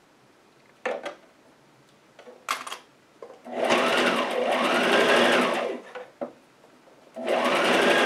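Brother domestic sewing machine stitching a wide zigzag basting stitch through three layers of knit fabric. It runs in two spurts of a couple of seconds each, the motor speeding up then slowing in each, after a couple of short clicks.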